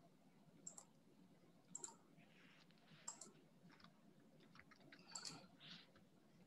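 Near silence with scattered faint clicks from a computer mouse and keyboard, a few single clicks and then a short cluster near the end, as a screen share is set up.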